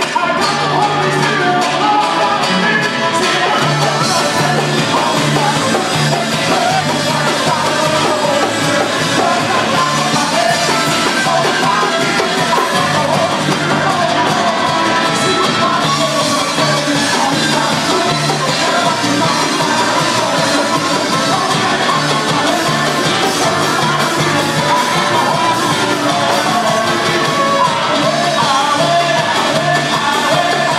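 Live worship music: a group of men singing together into microphones over an acoustic guitar and a steady, repeating low beat, amplified through the church's PA speakers. It is loud and unbroken.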